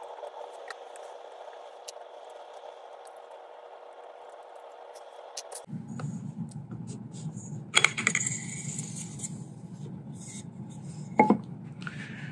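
Hands unscrewing and sliding a carbon-fibre barrel shroud off an air rifle: scattered small clicks and knocks, a louder scrape about eight seconds in, and a sharp click near the end. A faint steady hum runs underneath for the first half.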